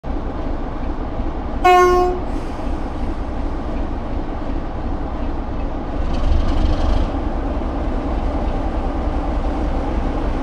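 British Rail Class 33 diesel-electric locomotive 33116 (D6535) moving slowly with its Sulzer eight-cylinder diesel engine running steadily. One short, loud horn blast sounds about one and a half seconds in.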